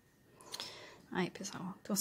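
A woman's soft, half-whispered speech begins about a second in, after a moment of near silence and a faint breathy hiss.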